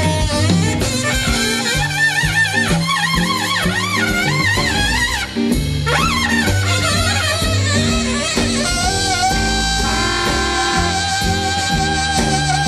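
Live swing band playing an instrumental passage: a lead line with wide vibrato over a stepping upright-bass line and drum kit, settling into a long held note about eight and a half seconds in.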